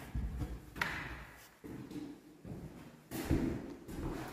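Footsteps on bare wooden floorboards: a few soft thumps and taps, the loudest about three seconds in.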